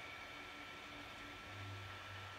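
Faint steady hiss with a low hum, which grows a little louder about one and a half seconds in; no distinct sound event.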